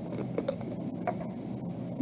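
A plastic alcohol bottle handled on a tabletop: a few faint light clicks and taps over low room noise.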